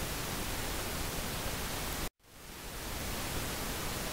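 Steady recording hiss, the background noise of a narration microphone. About halfway through it cuts out to silence for an instant, then fades back in over about a second.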